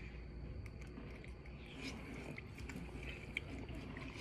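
Faint chewing of noodles: soft, scattered mouth clicks over a low steady hum.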